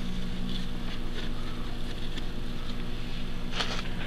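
A steady low hum, with a few faint soft scrapes and ticks of fingers packing damp substrate around plant roots.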